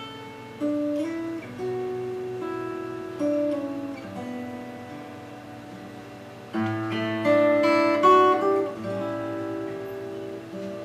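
Solo acoustic guitar on a hand-built Ed Claxton guitar, playing a slow, lullaby-like instrumental. Single plucked notes ring and overlap. A fuller, louder chord comes about six and a half seconds in, followed by brighter high notes.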